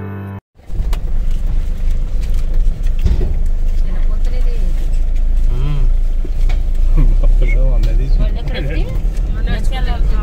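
Intro music cuts off about half a second in, followed by the steady low rumble of a car driving, heard from inside the cabin. Voices talk over it now and then in the second half.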